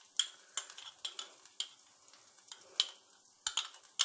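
A metal spoon clinking and scraping against a small glass cup as cooked white rice is spooned and pressed into it to mould a portion: a series of separate light clinks at irregular intervals.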